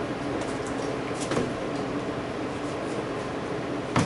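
A practice broadsword striking a stand-up training dummy, over steady room noise: a dull knock about a second in and a sharper, louder knock at the end.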